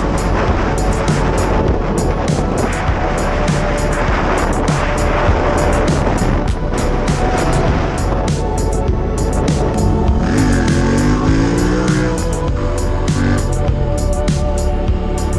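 Background music with a steady beat over a motorcycle's running engine and the wind and road noise of riding.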